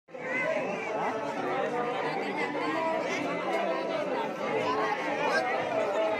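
Several people talking at once: overlapping chatter of a group of voices, with no one voice standing out.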